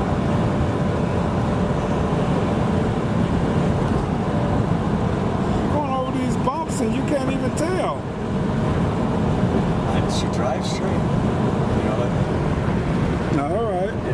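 Steady road and tyre noise with wind from a 1991 Buick Reatta roadster driving at road speed, its 3.8-litre V6 running under the rumble.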